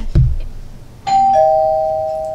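Two-tone doorbell chime: a higher note about a second in, then a lower note, both ringing on. A low thump comes at the very start.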